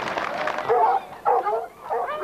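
A pack of foxhounds giving short yelps and cries, several in a row from about two-thirds of a second in, with crowd chatter at the start.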